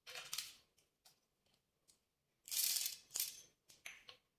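Dry pulses poured into a stainless-steel mixer-grinder jar, a brief rattling patter of hard grains on metal about two and a half seconds in. A softer rustle comes near the start as garlic cloves are dropped in, and a few small clinks follow near the end.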